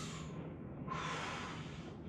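A man breathing audibly, two breaths in a row, the second starting about a second in.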